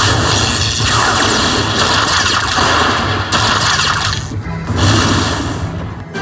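Aristocrat Lightning Link slot machine's electric-crackle and thunder effects, a run of surges about a second apart, as lightning strikes each bonus coin and the win tallies up, over the game's music.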